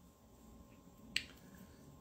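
Near silence in a quiet room, broken once a little past the middle by a single short, sharp click.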